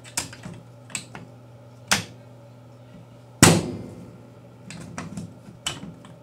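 Steel AK-47 bolt carrier and receiver clicking as the carrier is fitted back onto the receiver rails, bolt ears dropping into the receiver cutouts. One loud metallic clank about three and a half seconds in rings briefly, with lighter clicks before and after.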